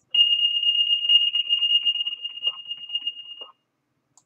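DCRS CAD dispatch software's emergency-activation alert tone: one steady high-pitched tone lasting about three and a half seconds. It fades somewhat, then cuts off.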